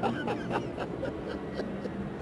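Faint steady drone of an airplane passing overhead, with a few light ticks.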